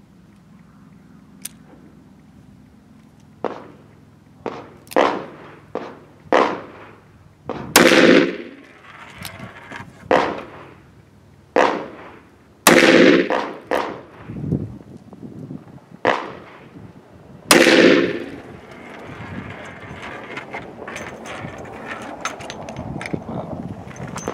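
.357 Magnum revolver firing 125-grain rounds over a chronograph: a string of sharp shots, the loudest three about five seconds apart, with softer reports between them.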